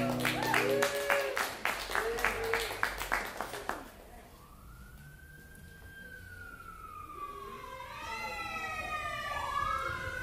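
An acoustic guitar's last chord rings out under a short burst of applause with a cheer, which dies away about four seconds in. Then a siren wails, rising and falling in pitch and growing louder toward the end.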